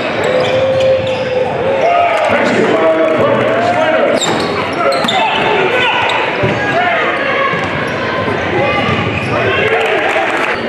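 Live court sound of a basketball game in a large, echoing gym: the ball bouncing on the hardwood among players' and spectators' voices and shouts.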